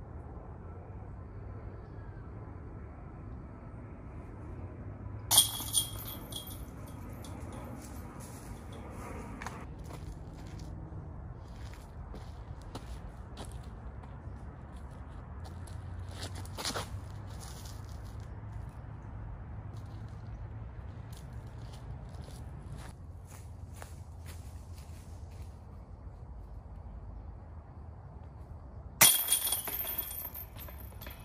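Flying discs striking the hanging metal chains of a disc golf basket twice, each a sudden crash followed by a jangling chain rattle. The first comes about five seconds in and rings on for several seconds; the second, near the end, is a made putt caught by the chains.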